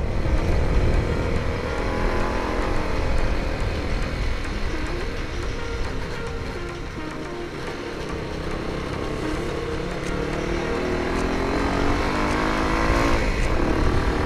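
Motorcycle engine running under way, mixed with wind rumble on the onboard microphone. The engine pitch sags through the middle and climbs over the last few seconds as the bike accelerates.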